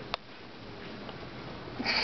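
Low, steady background noise with a single sharp click just after the start, then a short sniff near the end.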